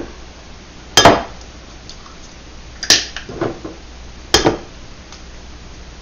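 Raw eggs being cracked one after another: three sharp taps about two seconds apart, with a few faint clicks of shell between.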